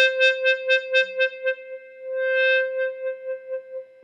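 A single electric guitar note sustained by an EBow on the G string at the fifth fret. Its volume pulses about four times a second as the EBow is moved up and down above the string, a fake tremolo effect. Around two seconds in the pulsing eases into a smooth swell, then resumes and fades toward the end.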